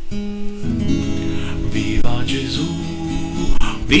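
Acoustic guitar strumming chords as the introduction to a song, just before the singing comes in.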